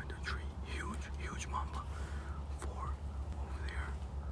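A man whispering softly, too faint for words to be made out, over a steady low rumble.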